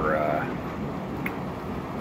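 Steady rumbling noise of heavy machinery: a rigid haul truck and a jaw crusher running while dumped dolomite rock waits in the hopper. The tail of a spoken word runs into the first half-second.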